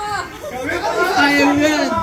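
Speech only: several voices talking over one another, not picked up as words, with one voice holding a long drawn-out sound near the end.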